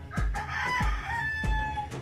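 A rooster crowing once, one long call of almost two seconds, over background music with a steady kick-drum beat.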